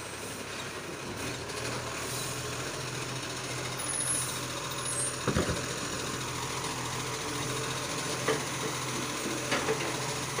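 Side-loading garbage truck running steadily while its lifting arm works the wheelie bins, with a sharp clunk about five seconds in and a few lighter clunks near the end.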